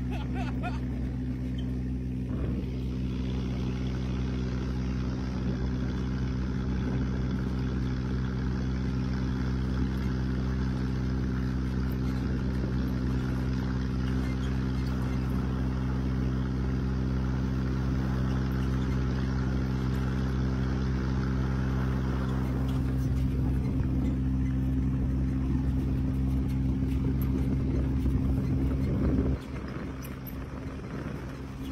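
Dune buggy engine running at a steady, unchanging pitch under way, with rushing noise over it. The sound drops away suddenly near the end.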